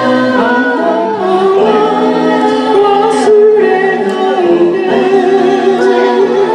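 A mixed group of men and women singing together into microphones.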